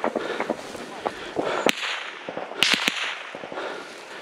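Gunfire during a firefight: one sharp crack about a second and a half in, then three in quick succession about a second later, over footsteps and rustling through dry wheat.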